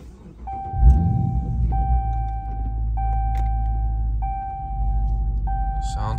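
Dodge Charger R/T's 5.7-litre Hemi V8 cranking briefly, catching about a second in with a rise in level, then settling into a steady idle. A steady electronic tone restarts about every second and a quarter over the engine.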